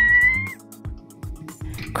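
A woman's high, held squeal of excitement, ending about half a second in, over soft background music that carries on after it.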